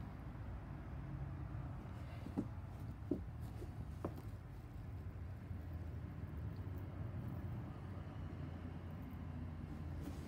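A low steady background hum, with a few faint clicks about two to four seconds in.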